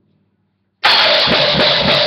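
After a brief silence, a drum kit comes in abruptly and loud about a second in, played fast with a dense wash of cymbals along with a punk rock song.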